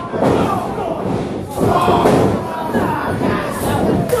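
Heavy thuds of wrestlers' bodies hitting the ring mat, with a sharp one just after the start and another about a second and a half in, under a small crowd's shouting and yelling.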